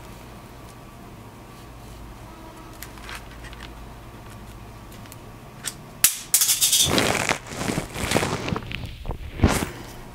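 A faint low hum, then a sharp click about six seconds in, followed by several seconds of loud scraping and rubbing as a plastic O scale bridge girder plate is handled on a tabletop and weathering powder is rubbed onto it with an applicator.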